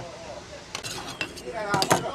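Ceramic bowls and a metal ladle clinking on a metal counter: a handful of sharp clinks, starting about three-quarters of a second in.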